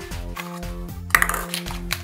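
Light background music with steady held tones. A little over a second in comes a sharp plastic click as a hollow plastic toy egg is pulled apart, followed by a few lighter clicks near the end.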